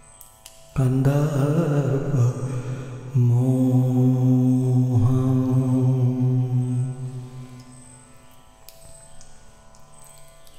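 A man's voice chanting in a low, long-drawn tone: a wavering phrase starting about a second in, then a steadier held note from about three seconds in that fades away around seven seconds. A soft steady drone of devotional background music runs underneath.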